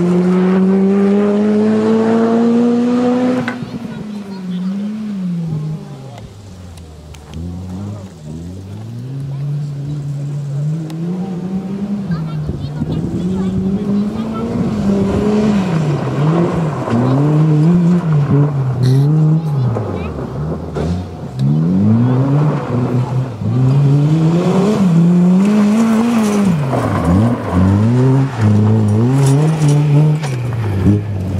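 Honda Civic Type R rally car's four-cylinder engine working hard on a gravel stage: first a long pull with the revs climbing steadily, then again and again the revs rise and drop as the car brakes, shifts and accelerates through corners. It grows louder as the car comes close, with gravel and tyre noise beneath.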